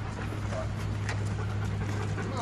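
A German shepherd panting close by, its breaths coming about twice a second, over a steady low hum.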